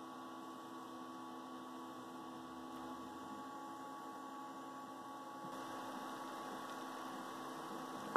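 Faint steady hum with a few constant tones under a low hiss, unchanging throughout.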